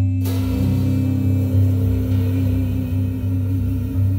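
Jazz quartet of voice, guitar, upright bass and drum kit holding a chord: a cymbal crash opens it, and a long held sung note rides over the band and wavers into vibrato near the end.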